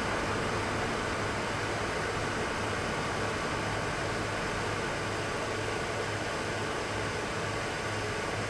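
Steady background noise: an even hiss with a low hum underneath, with no distinct events.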